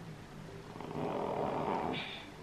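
A person's long, breathy exhale like a sigh, swelling over about a second in the second half.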